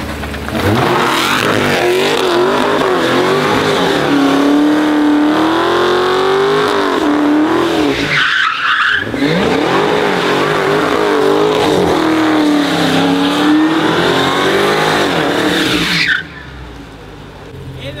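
Supercharged 6.2-litre HEMI V8 of a 2023 Dodge Charger Hellcat widebody held at high revs while the rear tyres spin and squeal through donuts, the engine note rising and falling as the car circles. The engine eases off briefly about eight seconds in, runs on, and drops away about two seconds before the end.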